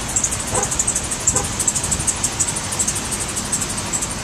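Outdoor street ambience: a steady rush of traffic noise with a fast, high-pitched insect chirping running through it. Two brief snatches of a distant voice come about half a second and a second and a half in.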